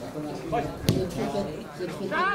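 A football kicked once, a sharp thud a little under a second in that is the loudest sound, amid players and spectators calling out across the pitch.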